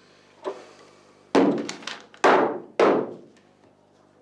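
A faint knock, then three loud, hard thuds close together, each ringing out with a long echo in a stone-vaulted room.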